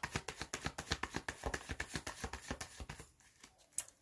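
A deck of tarot cards being shuffled: a rapid run of flicking clicks for about three seconds, then stopping.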